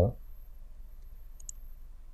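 Two quick, light clicks of a computer mouse button about a second and a half in, over faint room noise.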